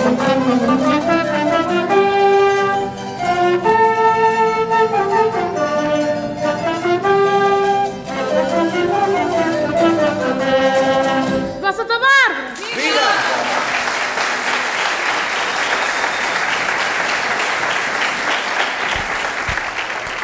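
A band with horns plays a melody in held notes, ending about twelve seconds in with a quick falling swoop. An audience then applauds steadily until the sound cuts off suddenly at the end.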